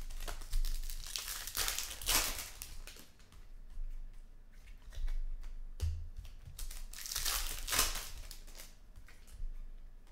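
Foil trading-card pack wrappers crinkling and tearing as packs are handled and opened by hand, in two spells of rustling: one in the first couple of seconds and another from about five to eight seconds in, with a few soft thumps of packs on the table.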